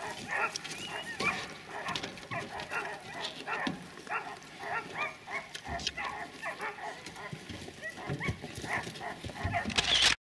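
A chorus of short animal calls, several a second and overlapping one another, going on without a break.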